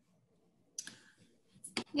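Near silence, broken by a short soft hiss about a second in and a couple of sharp clicks just before a woman starts speaking at the very end.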